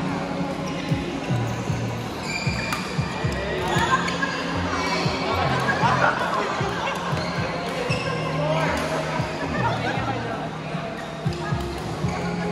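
Badminton rackets striking a shuttlecock during a doubles rally: sharp, irregular hits, with more hits coming from neighbouring courts, echoing in a large hall.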